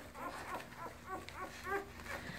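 Newborn Labrador retriever puppies squeaking faintly: a string of short, high whimpers, several a second.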